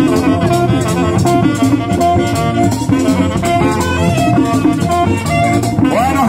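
Live band playing merengue típico: a saxophone carries the melody over a tambora drum, an accordion, and a steady rattling percussion beat.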